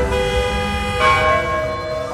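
Church bells ringing: a strike at the start and another about a second in, each ringing on.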